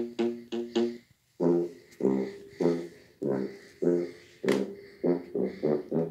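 Sousaphone playing a low oom-pah bass line: three quick notes, a short pause, then evenly spaced notes that come faster near the end.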